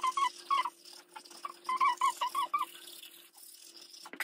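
Manual toothbrush scrubbing teeth in quick back-and-forth strokes with a squeaky sound. The strokes come in two short runs, the first at the start and the second about two seconds in.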